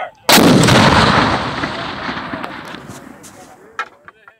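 Whitworth rifled cannon firing: one sudden blast a moment in, its boom rolling away and fading over about three seconds.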